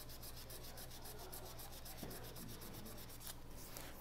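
600-grit sandpaper lightly rubbing the CA-glue finish on a pen blank turning on a lathe, knocking down lumps in the coating. Faint, even scratching over a steady low hum.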